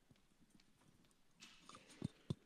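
Near silence: faint room tone in a hall, with a faint rustle near the end.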